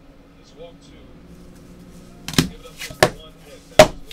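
Three sharp clacks of hard trading-card cases and a card box being handled and set down on a tabletop in the second half, the last the loudest, over a faint low steady hum.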